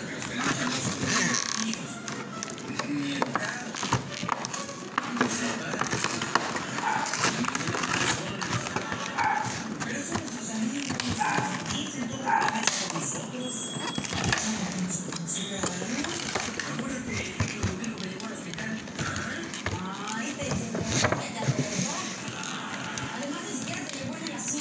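Plastic toy packaging being handled and opened by hand, with repeated clicks and crackles of the plastic blister and box. Background music and voices run underneath.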